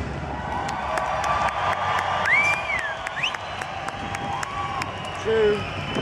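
Large festival crowd cheering and clapping as the song ends, with high gliding whoops rising above the cheering around the middle and a louder short shout about five seconds in.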